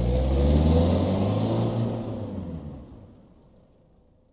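A car engine passing by: it swells to a peak about a second in, then fades away over the next two and a half seconds, its pitch falling slightly as it goes.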